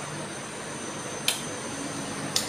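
A person eating a ripe mango: one short wet mouth smack a little over a second in, over steady room noise with a faint fan-like hiss and a thin high whine.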